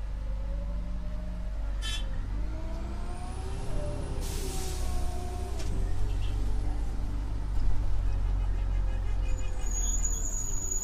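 Orion VII CNG city bus idling with a steady low engine hum. About four seconds in there is a burst of compressed-air hiss lasting about a second, and a thin high squeal starts near the end.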